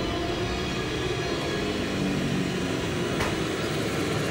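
Dark, suspenseful background music: a steady drone of held tones over a low rumble.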